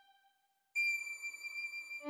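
Solo violin melody: one held note fades away, a short silence follows, and then a new high note starts abruptly about three-quarters of a second in and is held steadily.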